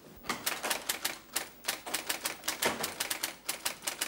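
Typewriter being typed on: a quick run of key strikes, about five a second, starting a moment in.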